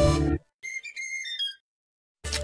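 A loud musical chord cuts off shortly after the start. It is followed by a short whistle-like jingle of quick, high notes stepping downward, about a second long, as the Cartoon Network logo sting. Silence follows.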